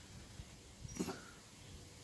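Quiet room tone with one short, faint vocal sound about a second in, during a pause in speech.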